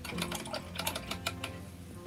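A quick, irregular run of light clicks and taps lasting about a second and a half: small objects, likely art supplies, being handled on a tabletop.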